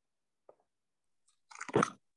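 Near silence with a faint click about half a second in, then a brief snatch of voice near the end.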